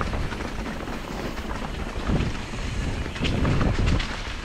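Wind rushing over the microphone of a rider-mounted camera on a fast mountain-bike descent, with tyre noise over the trail and a few knocks from the bike on rough ground, swelling about two seconds in and again near the end.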